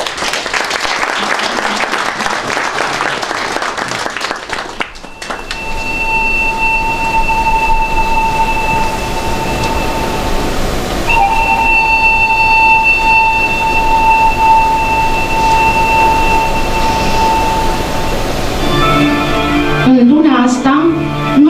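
Audience applause for about five seconds, cut off abruptly. Background music follows: two long held high notes one after the other, with more notes of an instrumental intro entering near the end.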